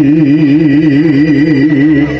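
Live jaranan music: one long note held with a quick, even wavering in pitch.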